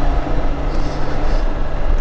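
A 2021 BMW K1600GTL's inline-six engine running at a steady cruise, with steady wind and road noise on the bike-mounted microphone.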